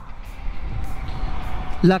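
TVS Sport 100's small single-cylinder four-stroke engine running at a steady cruise, mixed with rushing wind. A faint thin whistle shows about halfway through; the rider calls the engine's small whistle very particular to it.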